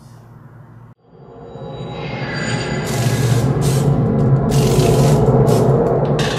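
Short intro music sting that swells up from about a second in to a loud, dense finish, with whooshing swishes over it.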